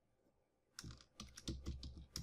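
Typing on a computer keyboard: a quick, irregular run of keystroke clicks starting just under a second in, after a short silence.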